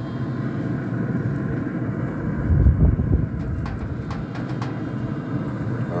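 Wind buffeting an unshielded microphone: a steady low rumble with a stronger gust about two and a half seconds in, and a few faint ticks near the middle.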